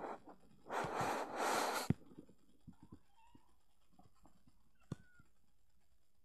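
A cat hissing: two harsh hisses back to back, about a second long together, near the start. A single sharp click follows a few seconds later.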